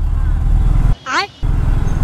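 Low, steady rumble of a sport motorcycle's engine running at low speed in slow traffic. About a second in, the sound briefly cuts out around a short vocal sound.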